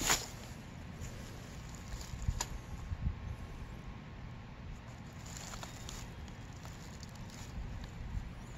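Low wind rumble and handling noise close to the microphone, with a sharp click at the very start and another about two and a half seconds in.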